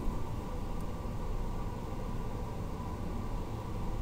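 Steady low hum and hiss of background room tone, with no speech or other events.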